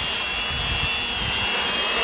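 Quadcopter's electric motors and propellers whining steadily as it hovers low and descends to land, with an uneven low rumble of air on the microphone.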